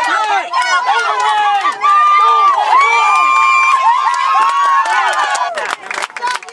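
Sideline spectators cheering and yelling together at a youth football game as a runner breaks free, several voices overlapping, with one long drawn-out shout held for about three seconds in the middle.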